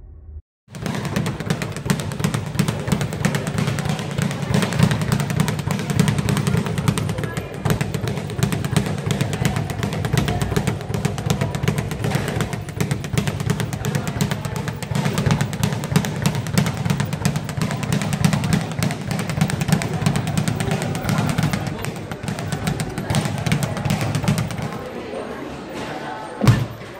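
Leather speed bag being punched in a fast, continuous rhythm, rattling against its wooden rebound platform as a dense run of rapid knocks.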